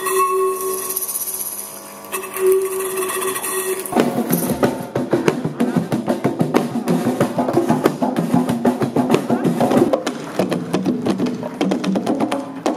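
Two long held notes, the first cut off briefly, then from about four seconds in a fast, dense hand-drum rhythm played on congas and tall wooden hand drums.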